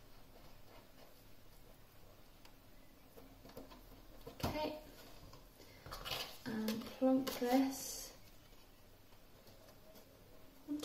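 Quiet handling of card and a cardboard box on a cutting mat. A single tap comes about halfway through, then a couple of seconds of card being wrapped and pressed onto the box.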